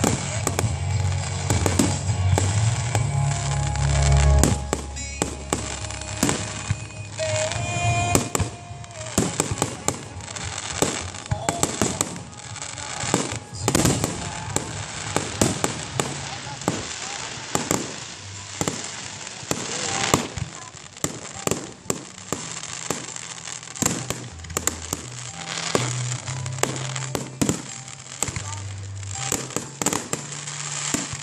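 Aerial fireworks display: shells bursting in a rapid, irregular run of sharp bangs, with crackling from glitter bursts, going on without pause.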